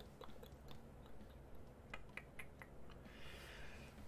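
Faint, scattered small clicks and ticks, a few a second, over a low steady hum, with a soft hiss coming in during the last second.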